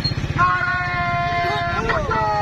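One voice shouting a long, held slogan call over a marching crowd, the note held steady for over a second before bending down, with a low steady rumble beneath.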